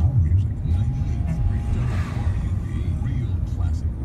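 Road noise inside a moving car: a steady low rumble of the tyres and engine.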